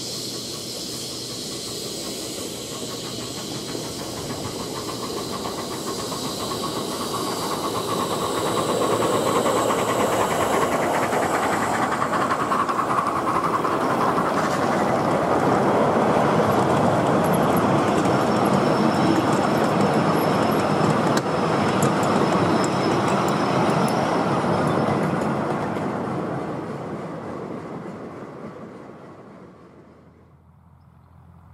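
A 10¼-inch gauge 4-8-4 miniature steam locomotive hauling a short set of passenger coaches approaches, passes close by and draws away. Its running and the clatter of the coach wheels on the track build over about ten seconds, stay loud for about fifteen seconds, then fade near the end.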